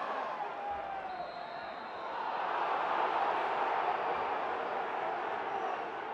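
Football stadium crowd noise, a dense hum of many voices that grows louder about two seconds in.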